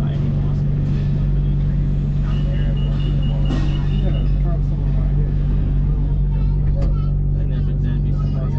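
Steady low hum inside a Bangkok BTS Skytrain car standing at a station, with people's voices over it. A run of short high beeps sounds a couple of seconds in.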